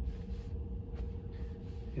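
Quiet room tone with a steady low hum, and faint paper-and-plastic rustling around the middle as a vinyl LP is slid back into its cardboard jacket.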